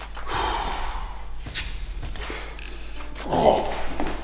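A man taking a sharp sniff of strong smelling salts through his nose, then, a little after three seconds, a loud breathy gasp as the salts hit. A short click falls in between.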